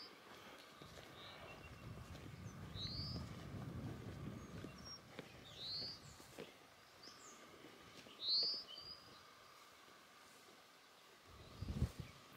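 A songbird calling in open meadow, a single high slurred note repeated three times about two and a half seconds apart, over quiet outdoor background with a faint low rumble in the first half.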